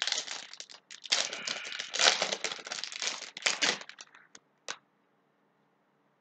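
Foil Yu-Gi-Oh booster pack wrapper crinkling as it is torn open and the cards slid out, for about four seconds, followed by two light ticks.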